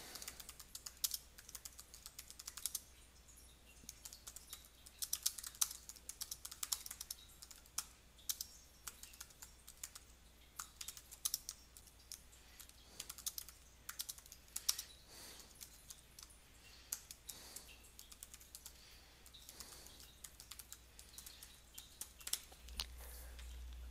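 Typing on a computer keyboard: faint, irregular runs of quick key clicks broken by short pauses.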